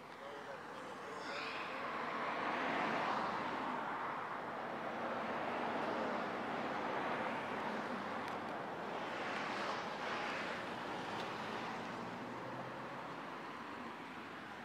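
Road traffic passing: two broad swells of tyre and engine noise without a clear engine note, the first peaking about two to three seconds in and the second about nine to ten seconds in.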